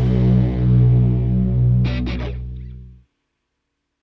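Final chord of a punk rock song on distorted electric guitar and bass, held and ringing out, then fading and cutting off about three seconds in. Three short scratchy noises come about two seconds in as the chord dies away.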